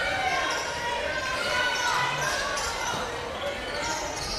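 Live court sound of a basketball game in a gym: a ball being dribbled on the hardwood floor, with faint calls from players and spectators echoing in the hall.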